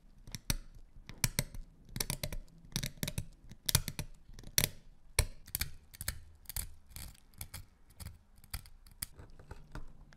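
A small flat-blade screwdriver scraping and picking crusted rust and corrosion off an old brass gasoline lighter. It comes as short, irregular scratchy scrapes and clicks, several a second.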